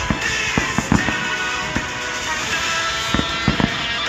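Aerial fireworks going off in a series of sharp bangs, several in quick succession, under loud music.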